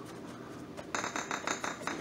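Paintbrush scrubbing black weathering paint onto smooth plastic armor: a quick run of short, scratchy strokes starting about halfway through.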